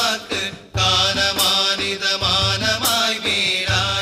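A daff muttu song: a group of voices chanting a devotional Mappila song in unison over steady beats of daffs, hand-struck frame drums.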